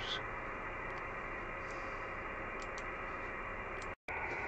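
Low, steady hiss with a few faint clicks in the second half.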